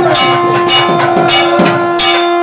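Hindu temple bells rung continuously during the arati lamp offering: sharp, irregular strokes several times a second over a steady ringing hum.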